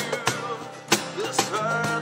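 Steel-string acoustic guitar strummed in an acoustic rock song, with a man's voice singing over it and a note held in the second half.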